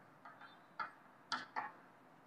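Chalk writing on a chalkboard: faint, short taps and scrapes at an uneven pace, about five strokes, the strongest a little past the middle.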